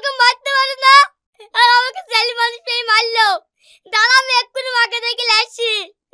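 A high-pitched child's voice in rapid sing-song bursts with wavering pitch, in three runs separated by short pauses.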